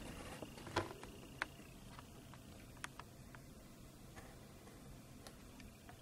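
Oil poured in a thin stream from a plastic bottle into a plastic cup of water: quiet, with a few scattered soft clicks from the bottle being handled.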